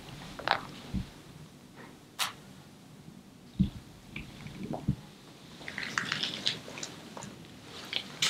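Quiet room tone broken by a handful of faint knocks and clicks: a sharp click a couple of seconds in, soft thumps around the middle, and a cluster of light ticks near the end.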